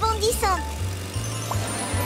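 A cartoon character's high-pitched laugh, ending in a falling glide about half a second in, over background music with a bass line. A rising, sparkling magic sound effect then builds up as the character transforms in a puff.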